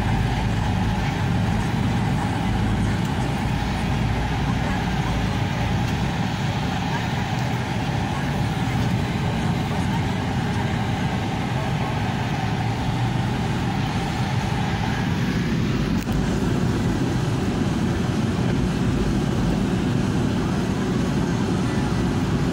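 Vehicle engine and road noise heard from inside the cabin as it moves slowly: a steady low rumble, with a faint steady tone over it that fades out about fifteen seconds in.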